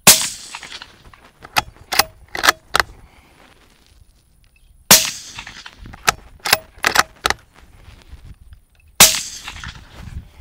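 Three suppressed rifle shots through a Silencer Central Banish 30 suppressor, about four seconds apart, each a sharp crack with a short ringing tail. After each of the first two shots comes a quick run of four sharp clicks as the rifle's action is worked. A phone meter at the shooter's ear reads about 105 dB at most.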